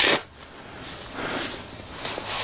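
Velcro on a fabric shooting-rest bag's fill flap ripped open in a short, loud tear right at the start, then soft rustling of the fabric as the bag's opening is handled.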